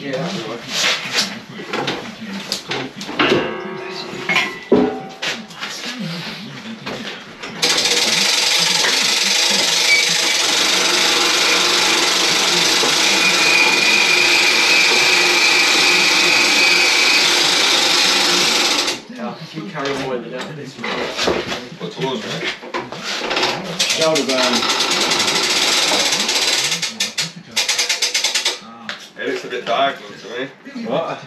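A power tool runs steadily for about eleven seconds, starting and stopping abruptly, with a higher whine in the middle. Before and after it, knocks and clatter come from handling on the building site.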